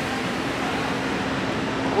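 Steady street background noise: an even hiss with a faint low hum and no distinct events.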